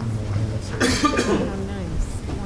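Indistinct chatter of children's and adults' voices as a group shuffles into place, with one short, loud cough about a second in.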